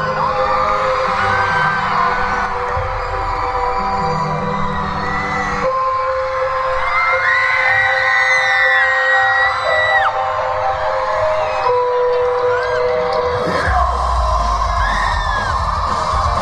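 Held keyboard chords of a rock show's intro playing over the PA, changing chord twice, while a crowd of fans screams and cheers over them in high sliding shrieks. Near the end a heavy low thud comes in as the band starts.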